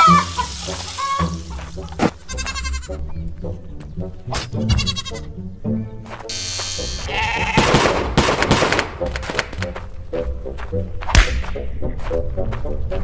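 Background music with cartoon sound effects: sheep bleating in short wavering calls, twice in the first half, then a buzz of electric hair clippers shearing for a couple of seconds in the middle, and a single sharp hit near the end.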